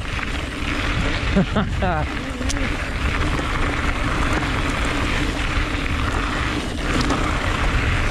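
Wind rushing over a handlebar-mounted camera mic, with the tyres of an electric full-suspension mountain bike rolling fast over a gravel singletrack and a steady faint hum underneath.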